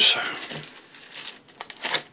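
Plastic bags crinkling as the sprues of a plastic model kit are handled in their box: an irregular run of rustles, louder near the end.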